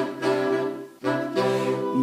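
Saxophone quartet of soprano, alto, tenor and baritone saxophones playing two held chords, the sound dropping away briefly about a second in between them.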